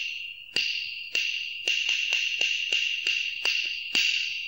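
A short interlude sound: a steady, high-pitched ringing buzz with about a dozen sharp strikes, roughly two a second and quickening in the middle, fading out just after the last strike.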